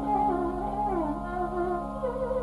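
Carnatic violin playing a melody with sliding, bending ornaments over a steady drone.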